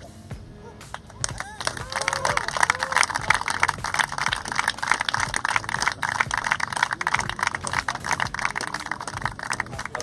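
A small crowd clapping and cheering after a golf shot. The applause starts about a second and a half in, with a few whoops early on, and carries on steadily.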